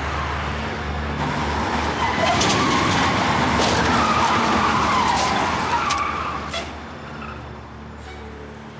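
Tractor-trailer tyres skidding and squealing under emergency braking: a wavering squeal builds about two seconds in, holds for several seconds and fades near the end, over a low rumble.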